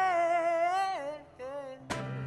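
A singer holding one long, slightly wavering sung note that drops in pitch and fades a little over a second in, followed by a brief softer note. A sharp click comes just before the end.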